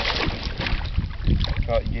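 Northern pike thrashing at the surface beside a canoe, a burst of splashing in the first half-second as it lets go of a hooked walleye. Wind rumbles on the microphone throughout.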